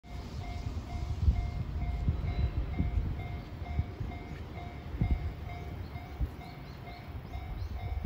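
Wind buffeting the microphone in gusts, with a faint railway level-crossing warning bell ringing steadily behind it, about two dings a second.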